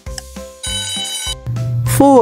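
Background music with a steady beat, then a short ringing alarm-clock sound effect of a bit under a second, signalling that the countdown timer has run out. A steady low tone comes in near the end.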